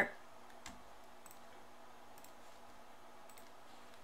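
A few faint computer mouse clicks over quiet room tone.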